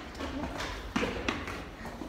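Footsteps climbing stairs: a few irregular knocking steps, with faint voices in between.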